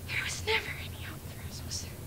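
A person whispering: short, hushed, breathy sounds in two clusters, the first near the start and the second past the middle, over a steady low hum.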